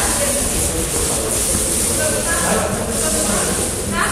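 Indistinct talk of several people echoing in a large sports hall, over a steady hiss.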